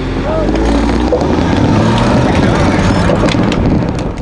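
Steady low rumble of wind and road noise on a bike-mounted action camera's microphone, with the voices of a group of road cyclists talking around it.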